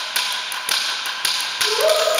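Wooden sticks struck in a steady beat, about two sharp taps a second, each with a short ring from the room. Choir voices come back in near the end on a rising note.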